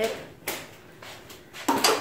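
A door being opened: a light click about half a second in, then a louder clunk near the end.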